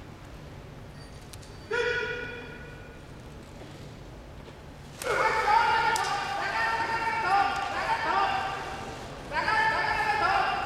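Sumo referee (gyoji) shouting his calls in a large hall: one short high call about two seconds in, then from about five seconds in a sharp knock as the wrestlers charge and clash, followed by a fast run of high shouted calls that keeps going while they grapple.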